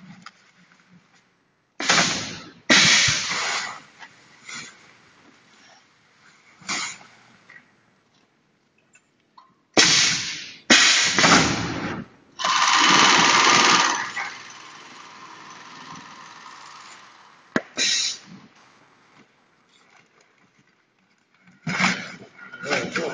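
Perlite mortar bagging machine working: a series of loud, sudden bursts of hissing, rushing noise from its pneumatic bag clamp and filling spout. The longest burst comes a little past the middle and lasts about a second and a half before fading.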